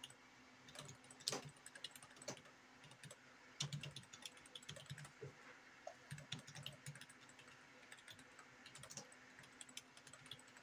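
Typing on a computer keyboard: faint, irregular runs of key clicks starting about a second in, with a few louder keystrokes among them.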